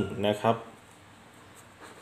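A man speaks a short phrase, then a marker pen writes on a sheet of paper with a few faint scratching strokes.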